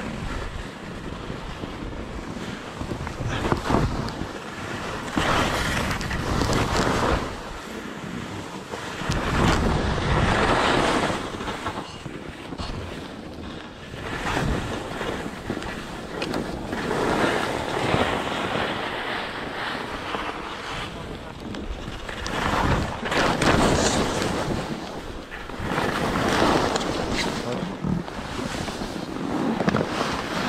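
Skis sliding and scraping over snow, swelling louder every few seconds as the skier turns, with wind buffeting the camera microphone.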